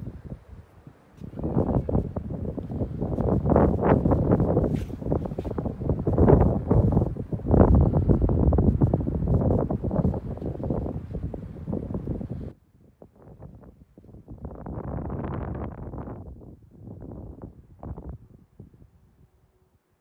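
Wind buffeting the camera microphone in loud gusts. It cuts off abruptly about twelve seconds in, then weaker gusts come back and die away near the end.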